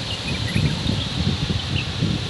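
Irregular low rumble of wind on the phone's microphone outdoors, with a few faint, brief bird chirps about half a second in and again near the end.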